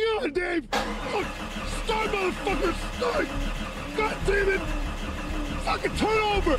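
A man's wordless groans and gasps. About a second in, a car engine starts with a sudden burst and runs steadily underneath as the moaning goes on.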